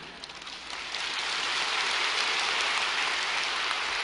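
Large congregation applauding. The clapping swells over the first second and then holds steady.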